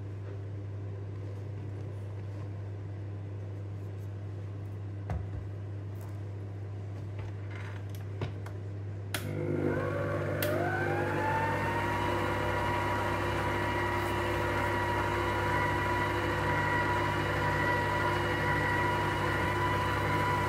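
Stand mixer with a wire whisk running at low speed through cake batter, with a few light clicks. About nine seconds in, after a click, the motor speeds up: a rising whine that levels off into a steady, louder hum.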